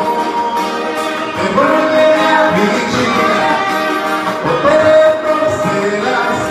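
Live band music: a man singing at a microphone over acoustic and electric guitar, the sung melody rising and falling in held notes.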